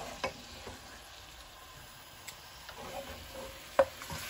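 Food frying in oil in an aluminium pot, sizzling softly while a wooden spoon stirs and scrapes through it. A few sharp knocks of the spoon on the pot, the loudest near the end.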